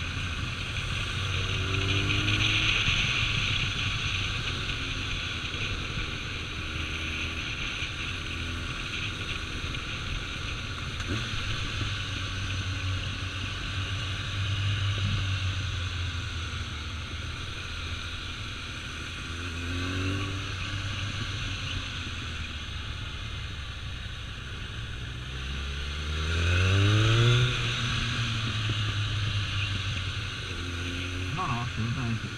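Kawasaki ZRX1200's inline-four engine running under way over a steady rush of wind. Near the end it revs up in a rising pitch, the loudest moment.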